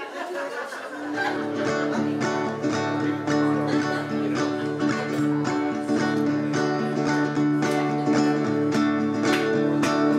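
Acoustic guitar strummed in a steady rhythm, chords ringing, starting about a second in: the opening of a song.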